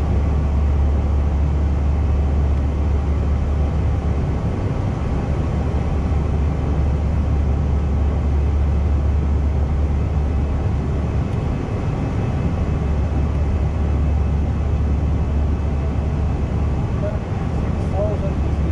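Steady in-flight noise inside an Airbus A320 cockpit: constant airflow and engine noise with a deep, even hum underneath.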